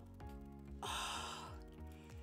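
Soft background music, with a woman's breathy gasp a little under a second in.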